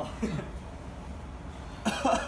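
A person coughing, with a short vocal sound at the start and a sharp burst near the end, from the burn of a ghost pepper in the throat.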